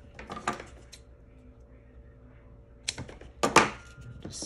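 Handling noise on a workbench: a few short clicks and knocks as small parts, heat-shrink tubing and the cable are picked up and handled. There is a quiet gap in the middle, and the loudest knocks come near the end.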